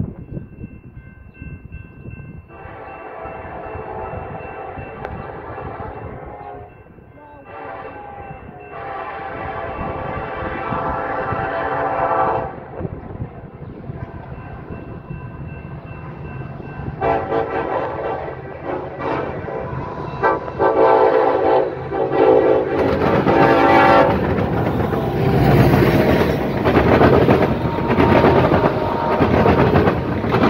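Norfolk Southern freight train's horn blowing several blasts as it approaches a grade crossing, growing louder. From about 23 seconds in, the locomotives and then tank cars pass close by with a loud rumble of diesel engines and wheels on rail.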